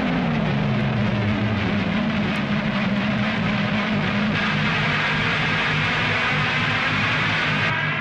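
A steady, noisy drone with a low hum left sustaining after a heavy hardcore song's final hit. It holds at an even level and starts to fade out near the end.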